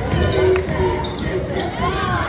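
A cheerleading squad chanting during a routine, with stomps thudding on the wooden gym floor.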